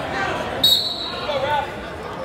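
Voices of spectators echoing in a gymnasium, with one brief high-pitched squeak a little over half a second in.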